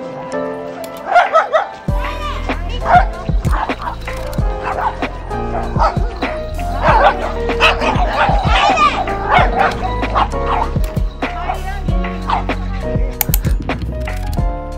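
Dogs barking in short bursts while playing, heard over background music; the barks cluster about a second in and again from about seven to nine seconds in.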